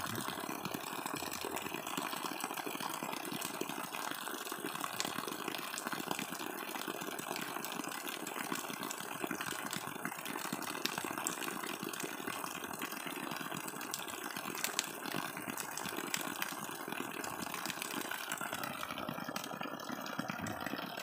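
Water from a hydraulic ram pump's 3/4-inch output pipe pouring out and splashing steadily, with many small irregular ticks. It is a fairly large flow, a sign that the pump is delivering well.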